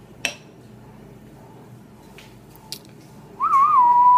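A man whistling a single note near the end: it wavers briefly, then holds at a steady pitch. Before it come a sharp click shortly after the start and a fainter click later.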